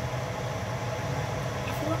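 Steady low rumble of a large pot of pasta water at a rolling boil on a stovetop.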